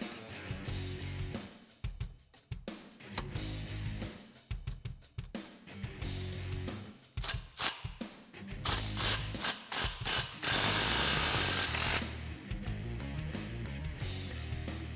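Cordless electric ratchet snugging the 15 mm nut of an exhaust band clamp, in a series of short trigger pulls and then a steady run of about a second and a half near the end.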